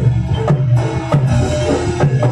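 Javanese Barongan gamelan ensemble playing a dance accompaniment: sharp, uneven drum strokes, typical of the kendang, over ringing metallophone notes.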